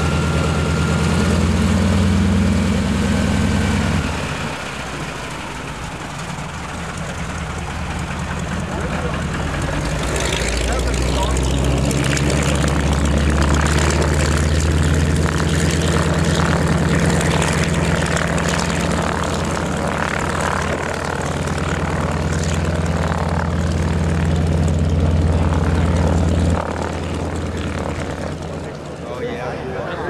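Single radial piston engine of a North American SNJ-4 trainer, a nine-cylinder Pratt & Whitney R-1340 Wasp, running as the aircraft taxis. It is loud for the first few seconds, eases off, then grows loud again from about ten seconds in and drops near the end.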